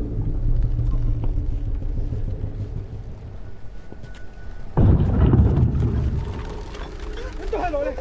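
Low steady rumble of a film soundtrack, broken about five seconds in by a sudden loud deep boom that dies away over a second or so, with voices starting near the end.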